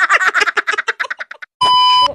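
Rapid laughter, several voices, tailing off about a second and a half in; then a short gap and a loud, steady beep, the test tone of a TV colour-bar screen, starting just before the end.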